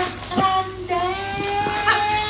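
A high-pitched voice singing, a couple of short notes and then one long note held through the second half.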